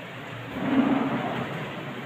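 Pull-out shoe rack cabinet being pulled open by its handle: a rolling rumble from the moving cabinet and its fittings that starts about half a second in, swells, and fades over about a second.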